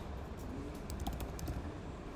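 Computer keyboard being typed on: a string of light, irregularly spaced keystrokes as code is entered.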